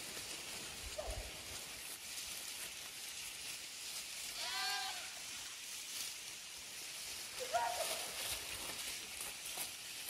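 Sheep bleating in a grazing flock: a faint call about a second in, a long quavering bleat about halfway, and a shorter one near the end, over a steady high hiss.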